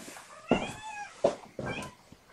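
A cat meowing twice: one longer call about half a second in, then a shorter one near the end, with a couple of sharp knocks in between.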